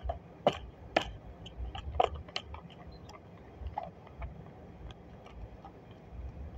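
Tarot cards being handled and shuffled against a clipboard: scattered clicks and taps, a few sharp ones in the first two and a half seconds, then fainter ones.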